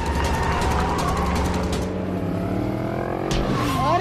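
Motor vehicle engine running, its pitch climbing over the last second or so as it revs up, loudest just at the end.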